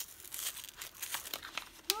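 Glossy wrapping paper on a parcel crinkling and rustling in short, irregular crackles as fingers pick at its taped flap.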